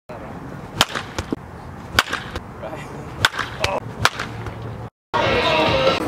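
A run of sharp, separate cracks at irregular intervals over a low background. A short drop to silence follows about five seconds in, and then steadier outdoor ambience begins.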